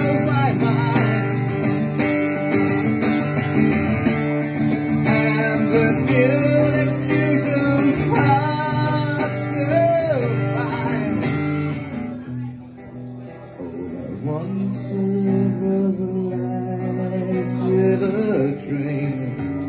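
Acoustic guitar strummed in a live song with a man singing over it. About twelve seconds in, the strumming stops and the music drops to quieter, held notes before picking up again.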